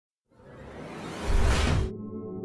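Logo-intro whoosh sound effect: a rushing noise swells up from silence, with a deep low boom about a second in, and cuts off sharply near the end. A sustained ambient music chord takes over.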